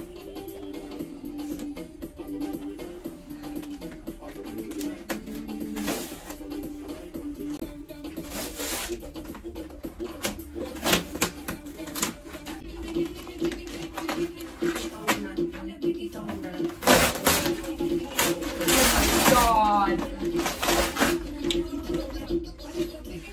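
Background music with vocals, over the ripping and rustling of thick cardboard as a flat-pack furniture box is torn open by hand. The tearing comes in short bursts through the middle and is loudest and longest near the end.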